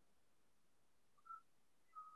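Near silence, broken by two short, faint, high whistle-like chirps: one a little past a second in and one at the end.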